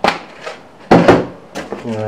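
A small clear plastic parts tub clicking shut, then a louder sharp knock about a second later as it is put away in the tool bag.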